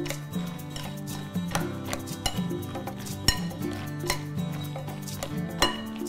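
Metal serving spoon stirring a thick, creamy salad in a glass mixing bowl: soft scraping with scattered clinks of metal on glass, one sharper clink about three seconds in. Background music plays underneath.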